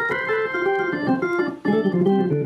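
Hammond B3 tonewheel organ played on the lower manual: a run of sustained notes and chords, changing every half second or so, with a brief break about three-quarters of the way through.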